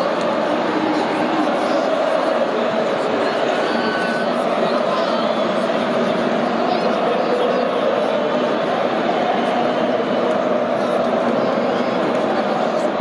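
Large football stadium crowd singing and chanting together, a steady, dense mass of voices.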